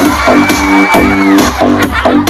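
Loud dance music played over the sound system, with a fast pulsing beat and a long held high note through most of the first second and a half.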